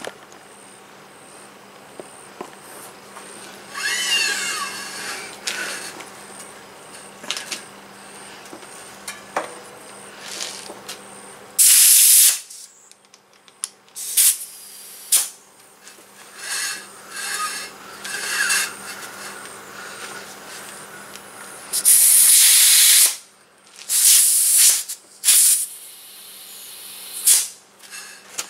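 Compressed air hissing from a hose-end air chuck on a bicycle tire's valve stem as the rear tire is pumped up, in short bursts each time the chuck is pressed on; the loudest bursts, about a second long, come in the second half.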